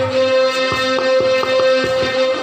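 Live folk instrumental music: a harmonium holds one steady reed note while a two-headed barrel drum (dhol) plays about six strokes in the second half.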